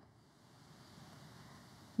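Near silence: faint, even room tone.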